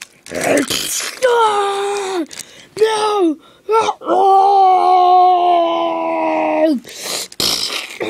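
A person voicing sound effects for a toy dragon: a few short cries, some falling in pitch, then one long held cry from about four seconds in to nearly seven, dropping at its end. A rustling bump of handling noise follows near the end.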